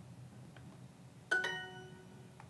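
Quiet room tone, then about a second in a bright electronic chime sounds once and fades out: the Duolingo app's correct-answer ding.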